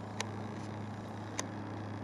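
Steady faint low hum under even background noise, broken by two sharp clicks, one just after the start and the other about a second later.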